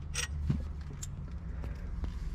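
Handling noise from a steering wheel being turned over in the hands: a brief metallic rattle early on, then a soft knock and a faint tick, over a low steady rumble.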